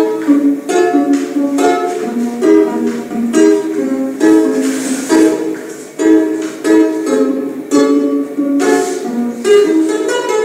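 A Georgian long-necked folk lute strummed in a lively repeating figure, with a stressed stroke about once a second.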